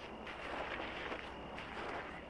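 Soft footsteps of leather boots on a dirt and gravel roadside, a few slow steps over a faint steady outdoor background.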